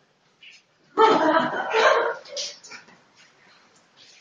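A person laughing, a burst about a second in that lasts a little over a second, then dies away into faint, brief sounds.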